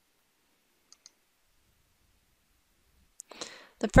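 A computer mouse button clicking once, heard as a quick press and release about a second in, against near silence.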